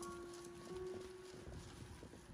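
Soft, irregular knocks of a cleaver cutting into a halved jackfruit on a metal tray, under a held note of background music that fades away.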